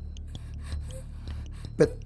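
Quiet film room ambience: a low steady hum with faint scattered ticks, before a man starts speaking near the end.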